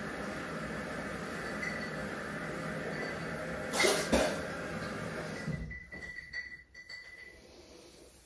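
A man retching into a toilet bowl, one short loud heave about four seconds in. The retching is feigned as a prank. It sits over a steady rushing noise that cuts out about a second and a half later.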